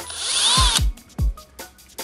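Cordless drill with a 1/8-inch bit drilling into the aluminium cover of an electric unicycle's hub motor in one short burst of under a second, its motor pitch rising and then falling.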